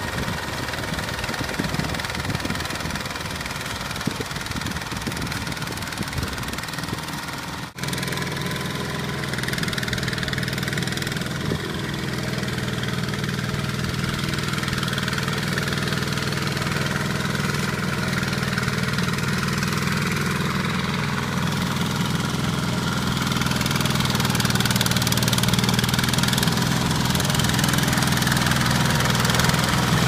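Single-cylinder diesel engine of a two-wheel walking tractor running steadily under load as its rotary tiller churns the soil, with a brief break about eight seconds in.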